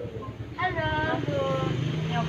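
Common hill myna giving two short, high, speech-like calls about half a second apart, over a low steady hum.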